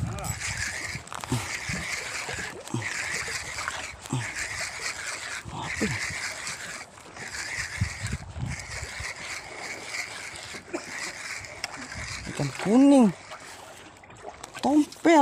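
Spinning reel being cranked in repeated spells of winding, reeling a fish hooked on a micro jig up to the boat. Near the end a short loud vocal call rises and falls over the winding.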